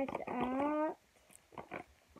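A dog whining in one long drawn-out whine that ends about a second in, followed by a few faint clicks.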